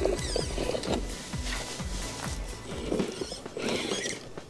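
Background music with a steady beat, over the RC crawler's 550 electric motor whirring and its tyres clicking and scraping as it climbs onto a rock.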